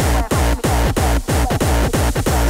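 Hardcore electronic dance track at 185 BPM, instrumental: a heavy kick drum on every beat, about three a second, each kick dropping in pitch, under a dense layer of synths.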